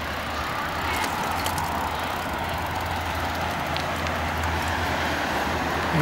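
Steady drone of multi-lane motorway traffic, with cars passing at speed.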